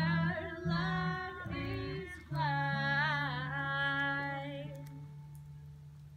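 A sing-along of voices with guitar accompaniment, ending on a long held final note that fades away over the last couple of seconds.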